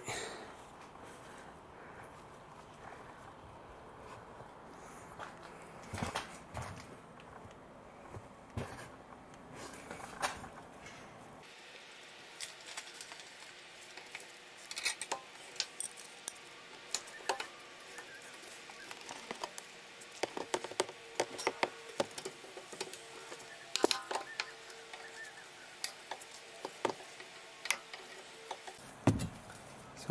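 Scattered clinks and knocks of metal hand tools as a socket and bar are fitted to the rear brake caliper bolts, a few at first and more often in the second half.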